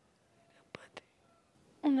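Mostly quiet room tone with two faint short clicks about a second in, then a woman starts speaking near the end.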